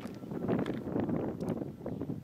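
A gust of wind blowing on the microphone, starting abruptly and holding steady.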